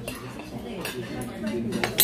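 Dishes and cutlery clinking a few times, over a low murmur of voices.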